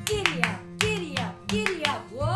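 Hand claps in a trotting rhythm, three quick groups of three claps, over background guitar music.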